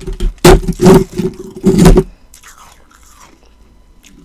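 Powdery ice circles being chewed close to the microphone: three loud crunches in the first two seconds, then only faint rustles.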